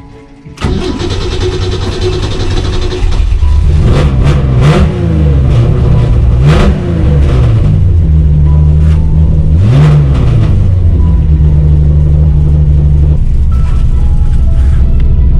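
Ford Sierra XR4i rally car's engine on its first start after winter storage, catching about half a second in and running. It is revved three times, each a rise and fall in pitch, then settles to a steady idle.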